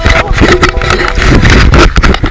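Loud rumbling noise with many knocks and scrapes: handling and wind noise on a handheld camera's microphone as the camera is swung around.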